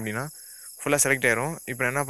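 A man's voice speaking in short phrases, over a steady high-pitched background tone that never lets up.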